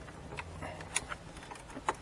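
Metal pry tool clicking against the plastic dashboard trim as a side panel is wiggled loose: a few small, sharp clicks spread through the moment.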